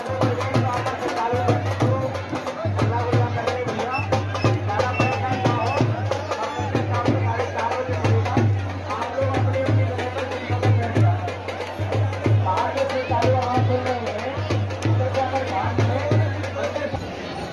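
Drums beating a steady, fast rhythm, with many sharp clicks and a crowd of voices singing and shouting over them.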